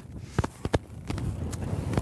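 Strong blizzard wind buffeting the microphone with a low rumble. A few sharp, irregularly spaced knocks stand out over it.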